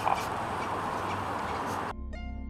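Steady outdoor background noise with faint, irregular ticks, cut off abruptly just before the end.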